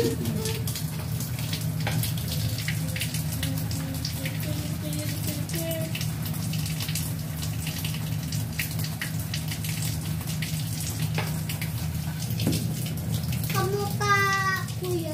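Thin stream of water from a water filter's faucet splashing steadily into a stainless steel sink, with small drips and splashes ticking throughout and a steady low hum underneath. The water is being run off to flush a newly fitted filter cartridge, which gives black water at first.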